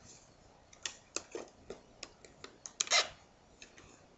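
Strands of round basket reed clicking and scraping against each other and the woven basket side as a new piece is worked in beside a stake: irregular small clicks, with a longer, louder scrape about three seconds in.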